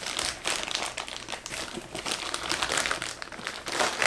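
Plastic mailer bag crinkling and rustling as it is handled and pulled open by hand and a boxed product is drawn out of it, in irregular bursts with the loudest crackle near the end.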